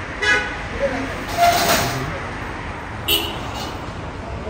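Two short vehicle horn toots, one just after the start and one about three seconds in, over steady street traffic noise.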